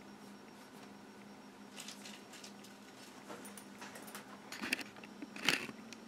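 Faint low steady hum of a room fan, with scattered soft clicks and rustles of the camera being handled, the sharpest about five and a half seconds in.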